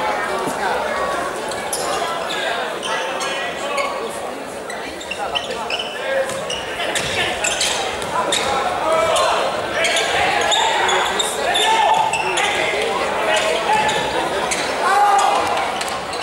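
Indoor futsal game sound: the ball being kicked and bouncing on the wooden court, with voices calling out. It all echoes around the large arena hall.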